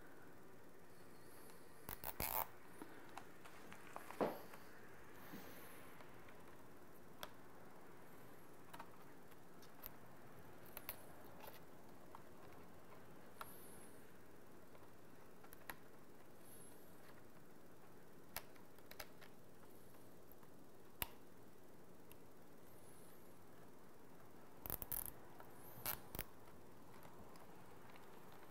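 Small plastic zip ties being threaded through mesh and pulled snug by hand: faint scattered clicks and short rasps over a low steady hiss, with a few louder ones about two and four seconds in and a brief cluster near the end.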